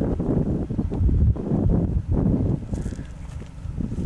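Wind buffeting the microphone in uneven gusts, a deep rumble. Faint voices in the background near the end.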